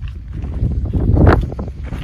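Wind buffeting the microphone: a low rumble that swells into a loud gust about a second in, then eases.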